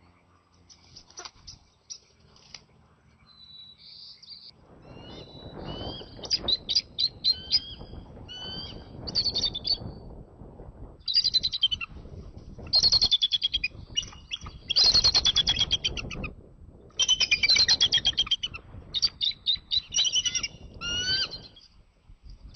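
Bald eagles calling: repeated bouts of rapid, high, piping chatter notes, some sliding upward, beginning a few seconds in and continuing nearly to the end.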